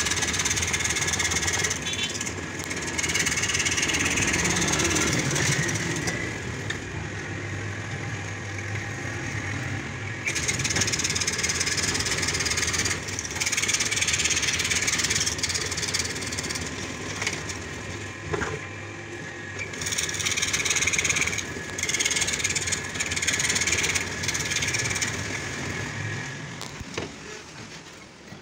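Overhead-arm scroll saw running, its reciprocating blade cutting a scrolled pattern through a board; the sound swells and dips every few seconds as the cut goes on and eases off near the end.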